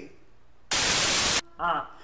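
A loud burst of static-like white noise, under a second long, that starts and cuts off abruptly: a TV-static transition effect at an edit.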